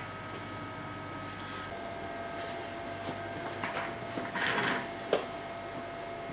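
Workshop room tone: a steady electrical hum with a faint high whine, one thin tone of which comes in about two seconds in. Brief shuffling and handling noises follow in the second half, with a single sharp click near the end.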